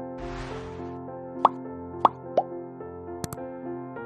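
Background music of steady sustained chords, overlaid with editing sound effects: a short whoosh at the start, three quick pops around the middle, and a double click near the end, the sounds of a subscribe-button animation popping up.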